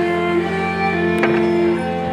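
Folk string trio of two violins and a double bass playing a tune, the fiddles bowing long held notes over the bass.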